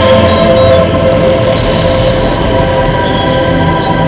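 Projection-mapping show soundtrack played loud over PA speakers: a dense electronic drone of several held tones over a low rumble.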